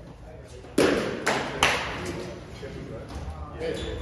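A baseball bat hitting a ball with a sharp crack about three quarters of a second in, followed within the next second by two more sharp knocks, all echoing in a large indoor hall.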